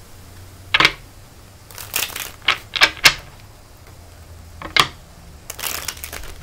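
A deck of tarot cards being shuffled by hand: about seven short, sharp riffles and snaps of the cards, separated by brief pauses.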